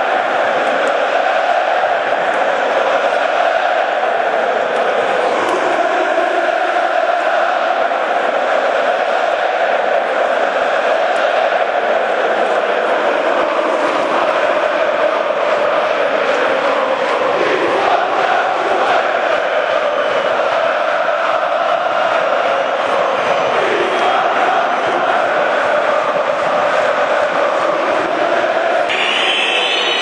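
A large football stadium crowd chanting in unison, a steady wall of many voices singing together. The sound changes abruptly just before the end.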